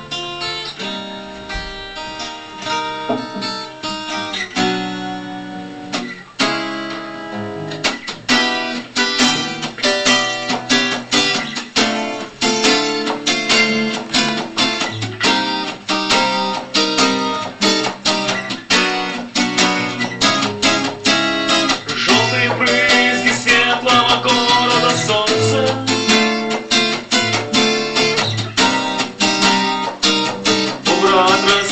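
Solo acoustic guitar being played. It starts with fairly spaced picked notes and chords, then settles about eight seconds in into a denser, steady rhythmic picking pattern.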